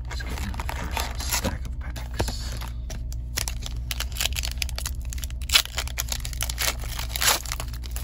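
Foil wrapper of a hockey card pack crinkling and tearing as packs are handled and one is ripped open, in irregular sharp crackles, the loudest about halfway through and near the end.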